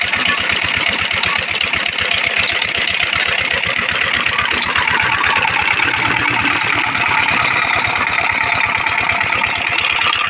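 Small stationary diesel engine with a heavy flywheel running steadily under load, belt-driving a sugarcane crusher, with a rapid, even thudding beat.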